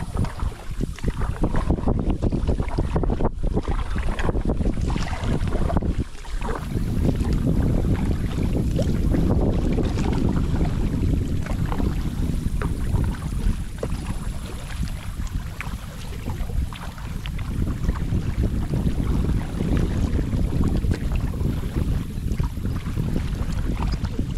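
Wind buffeting the camera microphone in an uneven low rumble, over the splash and drip of a double-bladed kayak paddle dipping into the water stroke after stroke.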